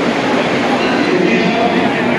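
Vande Bharat Express electric train at a station platform, a loud steady rush of train noise with crowd voices mixed in.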